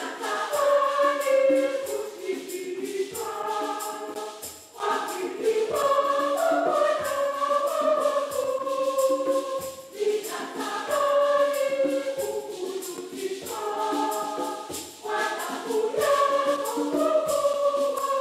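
Church choir singing a Swahili hymn with tambourine and shakers keeping a steady beat; the sung phrase repeats about every five seconds.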